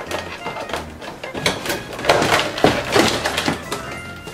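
Small plastic toys and a cardboard box being handled as the toys are pulled out: scattered knocks, clicks and rustles, with background music.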